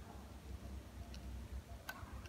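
Quiet room tone with a faint low hum and a few small, sharp clicks, the sharpest one near the end.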